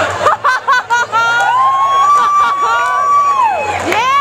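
Audience laughing after a joke, then one long high whoop held for about two seconds that drops away near the end, with a second whoop starting just after.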